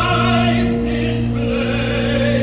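A choir singing slow sustained notes over steady held low instrumental notes, in a stage musical's finale.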